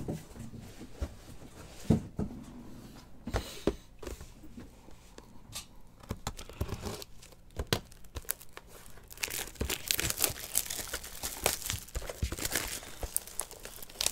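Plastic shrink wrap being torn off a sealed trading-card box and crumpled by hand: scattered taps and crackles at first, then dense crinkling and tearing from about nine seconds in.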